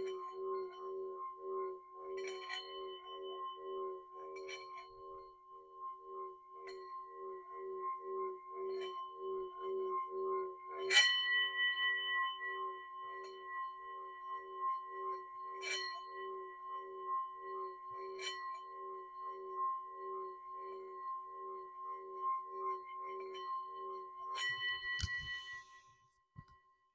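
Metal singing bowl played by rubbing a wooden mallet around its rim: a sustained hum with a steady pulsing waver under a higher ringing tone. Several light knocks of the mallet on the rim set off brighter ringing, the loudest about eleven seconds in. The rubbing stops near the end, leaving the bowl ringing on.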